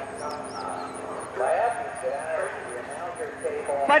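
A person's voice calling out faintly at a distance, about a second and a half in, over quiet outdoor background noise. There are two short high chirps near the start.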